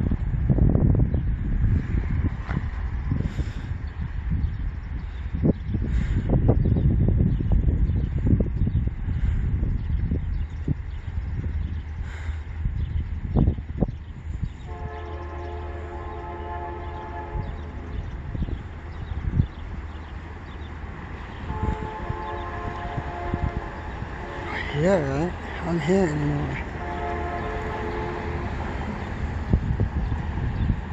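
A Canadian National freight locomotive's horn sounds in the distance as the train approaches: three long, steady blasts in the second half. Before them there is a low rumble of wind on the microphone.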